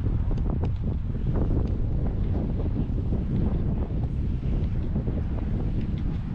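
Wind buffeting the camera microphone: a steady, gusting low rumble with a few faint irregular clicks over it.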